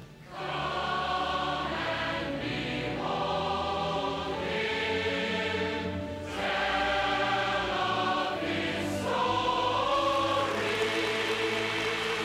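Large choir singing slow, sustained phrases with short breaks between them.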